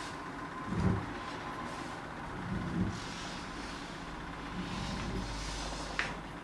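Felt-tip marker drawing on a sheet of paper, a soft scratchy rubbing in a few short spells, over a low steady room rumble with a couple of soft bumps.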